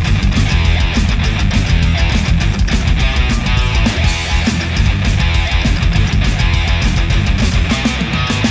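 A rock band playing an instrumental passage live: electric guitar, electric bass and a drum kit keeping a steady beat, with no vocals.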